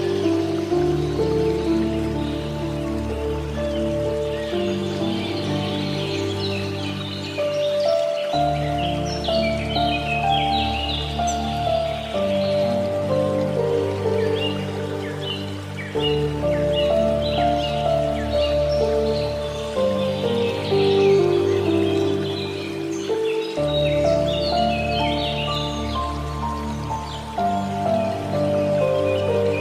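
Soft, slow piano music with held low chords that change every few seconds, laid over birds chirping and the gentle sound of flowing water.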